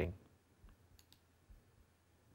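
Quiet small room with a few faint, short clicks scattered through the first second and a half, just after a man's speech trails off at the very start.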